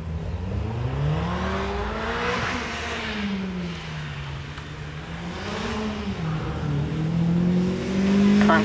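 Mazda Eunos Roadster's four-cylinder engine running hard up a hillclimb course. The revs climb, fall away about two and a half seconds in, build again with a short dip near six seconds, and are rising at the end.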